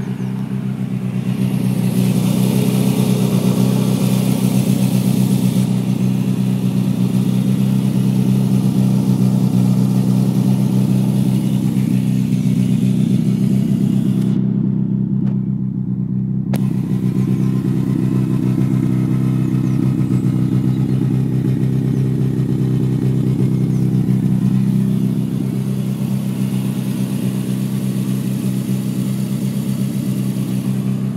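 Classic Mini's engine running steadily at a constant speed.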